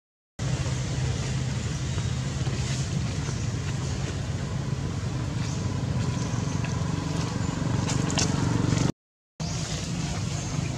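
Steady low rumble like a motor running nearby, with a few faint clicks over it; it drops out completely for about half a second at the start and again about nine seconds in.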